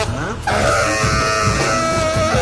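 Free-jazz group playing live: saxophone, two double basses and drums. A sliding rise in pitch about half a second in leads into held, shrill high notes over the basses and drums.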